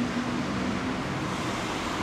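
Steady background rumble of distant road traffic, with a brief low steady tone in the first second.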